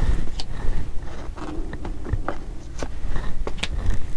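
Tarot cards being drawn and handled: a string of light, irregular clicks and snaps as cards are pulled from the decks and turned over.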